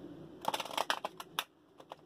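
Tarot cards being shuffled in the hands: a quick run of crisp card clicks and slaps starting about half a second in and lasting about a second, then another run beginning near the end.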